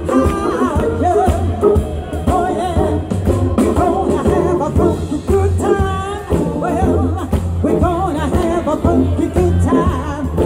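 Live soul band playing: a woman singing over keyboard, drums and electric guitar, with a steady beat and heavy low end.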